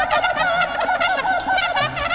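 Live jazz quartet playing: alto saxophone and trumpet in rapid warbling runs, over upright bass and drums.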